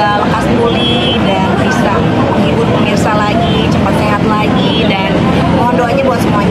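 A woman talking inside a car cabin, over a steady low hum from the vehicle.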